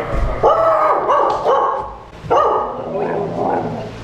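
A dog barking at someone arriving: two runs of short barks, the first starting about half a second in, the second just past the middle.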